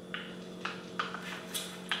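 Slurping of boba tea through a wide plastic straw: about five short, hissy sucks in two seconds, reaching for the tapioca pearls at the bottom of the cup.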